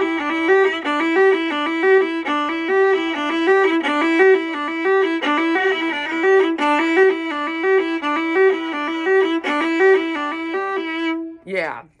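A solo viola bowed through a quick, even run of notes that rocks back and forth between neighbouring pitches, stopping shortly before the end.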